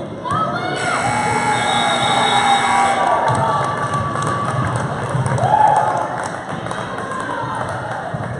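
Gym scoreboard buzzer sounding steadily for about two seconds, starting just under a second in, signalling the end of play. A crowd cheers and children shout over it and after it.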